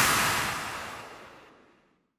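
The decaying tail of an electronic logo sting: a hissy wash that fades steadily away, gone by near the end.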